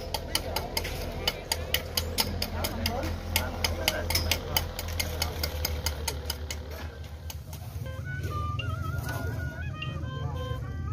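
Funeral music: a fast, even clicking beat, about five clicks a second, over a low rumble. From about eight seconds the clicks give way to a wavering high melody.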